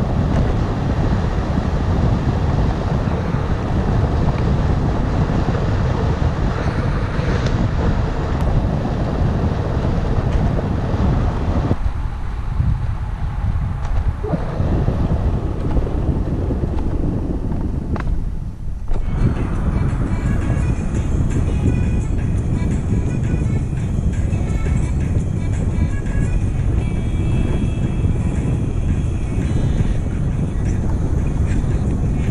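Wind rushing over a bike-mounted camera's microphone while riding, a dense, steady rumble, with background music laid under it. The noise dips briefly twice in the middle.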